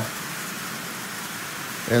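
Marx 10005 tin streamliner, fitted with an electric motor in place of its original windup, pulling 18 tin litho cars on three-rail tinplate track at about 30% power. It gives a steady, even rolling rattle of wheels on track with motor whir.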